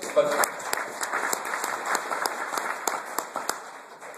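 Audience applause: a dense patter of many hands clapping that thins out near the end.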